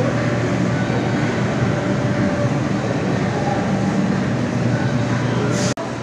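Steady hum and hiss of a shopping mall's air conditioning and hall noise, cutting out for an instant near the end.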